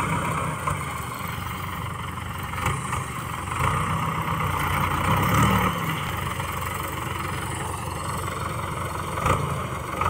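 Diesel farm tractor engine running steadily as it pulls a disc harrow across a field, with a brief swell in engine note about halfway through. A couple of sharp knocks, one early and one near the end.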